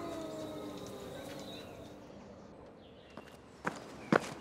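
Sustained tones of background music fading away to quiet, followed by a few faint sharp clicks near the end.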